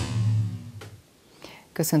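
Short TV transition sting: a whoosh over a low held tone that fades out about a second in.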